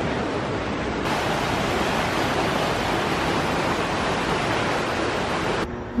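Steady rushing of a fast-flowing creek, an even hiss of water with no pauses, that cuts off abruptly near the end.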